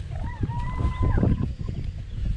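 Wind buffeting the microphone, a loud low rumble throughout. A faint, high, held tone wavers and then holds steady for about a second in the first half.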